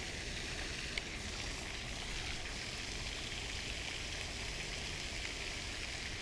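Steady splashing hiss of a pond's spray fountain, with a single faint click about a second in.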